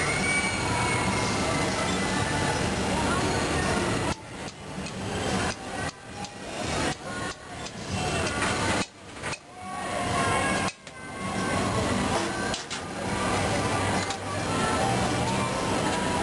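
Steady roar of a gas-fired glassblowing furnace and its blowers, with a low hum, faint voices and music behind it. The sound drops away sharply several times in the middle.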